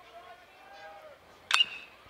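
A metal bat striking a baseball once, about one and a half seconds in: a sharp ping with a brief high ring.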